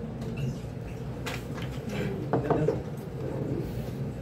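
Lull between songs in a small bar: a low murmur of room noise and voices, with a few light clicks and knocks, the sharpest a little over a second in.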